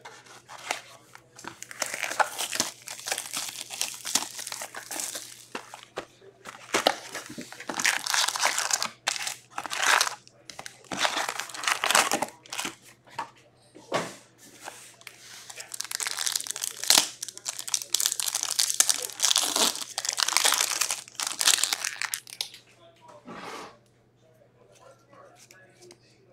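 Foil wrappers of Upper Deck hockey card packs crinkling and tearing as the packs are ripped open by hand, in irregular bursts.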